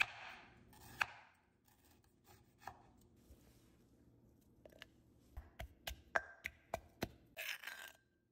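A knife cutting galangal on a wooden board with a few sharp knocks, then a wooden pestle pounding galangal in a clay mortar: a run of sharp knocks, about three a second, over the last few seconds.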